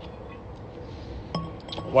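A glass bottle clinks once about a second and a half in, with a brief ring.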